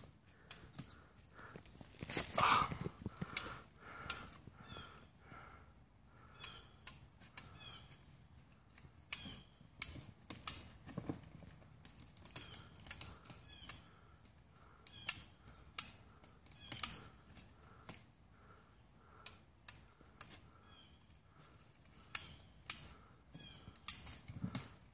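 Hand-operated winch (come-along) being cranked, its ratchet giving an irregular series of sharp metallic clicks, one or two a second, with a louder strain about two and a half seconds in.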